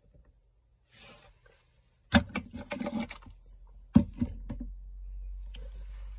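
Handling noise of plastic action figures being set down on a shelf: two sharp clacks, about two and four seconds in, with light rustling and knocking between them, then a low steady hum.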